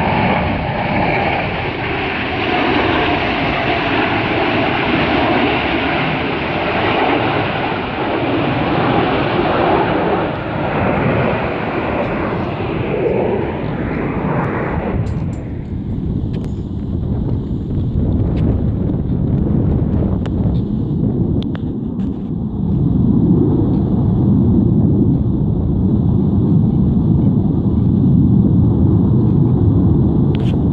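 Blue Angels jets passing overhead in formation, a continuous loud jet roar. About halfway through the higher hiss cuts away, leaving a deep rumble that grows louder again later on.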